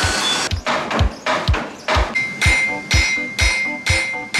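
A smith's hammer striking red-hot steel on an anvil, about two blows a second, some blows leaving a ringing tone, mixed with background music.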